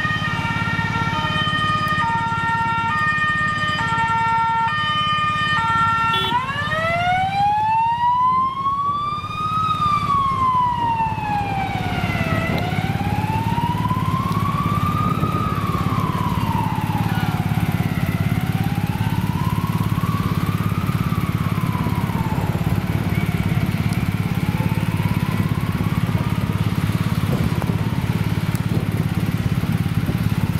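Ambulance siren sounding an alternating two-note hi-lo for about six seconds, then switching to a slow rising-and-falling wail. The wail gets fainter as the ambulance drives away.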